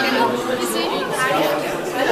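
Several people chattering at once, with overlapping voices and no single clear speaker.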